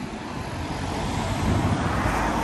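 A car driving past on a city street, its engine and tyre noise growing steadily louder as it approaches, over general traffic noise.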